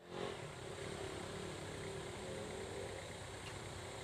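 Faint, steady outdoor street ambience with the hum of a vehicle engine running.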